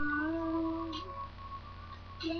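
A girl humming one held note along to the song, about a second long, rising slightly before it stops. A faint steady high tone runs underneath.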